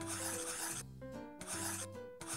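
Scratchy pen-on-paper writing sound effect as letters are drawn: one longer scratch in the first second and a shorter one about three-quarters of the way through, over soft background music with sustained notes.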